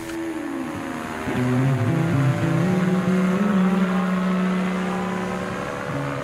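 Ultralight aircraft engine passing overhead: a steady propeller drone that rises slightly in pitch early on, grows louder about two seconds in and eases off a little toward the end.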